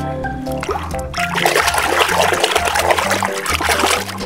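Soapy water splashing and sloshing in a plastic tub as a hand swishes a small die-cast toy car through it, starting about a second in, over background music with a steady bass line.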